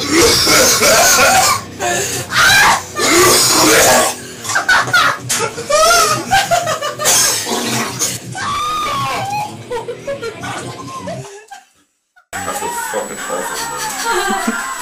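A man retching and vomiting in a small tiled bathroom, with loud laughing and shouting from the others around him. The sound drops out suddenly for about a second near the end.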